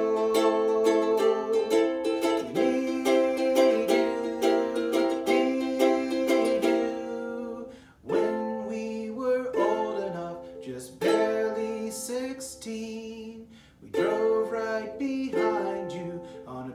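Ukulele strummed steadily in chords; about halfway through the strumming breaks up into single chords struck and left to ring, with short pauses between.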